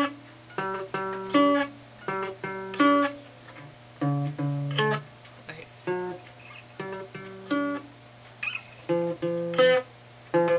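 Acoustic guitar played solo, a short chord riff strummed in quick groups of strokes that repeat about every second and a half.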